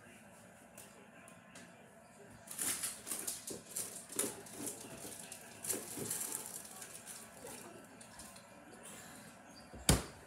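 Someone rummaging off to the side: irregular clatter, clicks and rustling that start a couple of seconds in and fade, then one sharp knock near the end.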